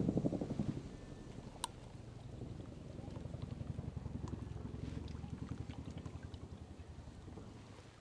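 Boeing CH-47 Chinook tandem-rotor helicopter in the distance, its blades beating in a rapid low rhythm that fades gradually away. A single sharp click sounds about a second and a half in.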